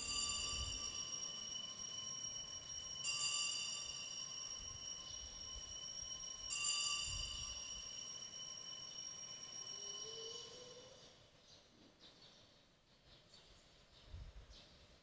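Altar bells rung three times, about three seconds apart, each ring a cluster of high metallic tones that sustains and then fades out around eleven seconds in. At this point in the Mass they mark the elevation of the just-consecrated host.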